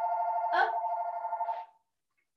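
Electronic telephone ringer sounding one warbling two-tone ring that cuts off about three-quarters of the way through, with a brief extra noise partway in.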